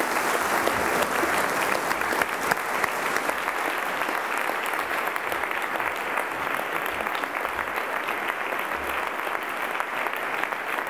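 An audience applauding: dense, steady clapping that eases slightly toward the end.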